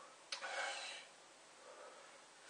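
A man breathing hard through his mouth from the burn of a superhot chili pepper. A faint click comes about a third of a second in, then one hissing breath of under a second.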